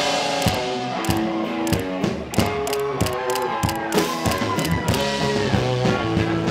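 Indie rock band playing: electric guitar lines with pitch bends over a steady drum-kit beat.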